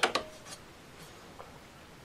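A few faint light clicks from a Brunswick phonograph's metal reproducer and tone arm being handled, most of them in the first half second.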